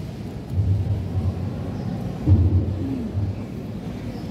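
A muffled, boomy amplified voice echoing around a large metal-roofed hall, heard mostly as a low rumble that comes and goes in syllable-like pulses.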